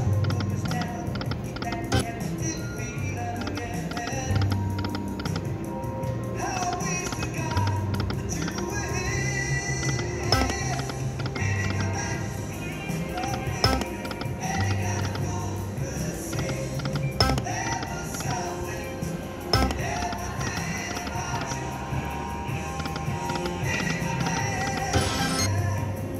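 Electronic game music and reel-spin jingles from an Aristocrat Lightning Link Best Bet slot machine during repeated spins, over a pulsing bass. A few sharp clicks are scattered through it.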